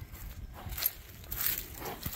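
Faint rustling and a few soft thuds from a horse moving on a lead right beside the microphone, over a low rumble.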